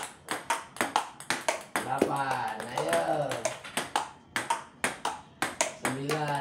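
Table tennis ball clicking off paddles and the table in a quick, steady rally, about three hits a second. A man's voice calls out in the middle.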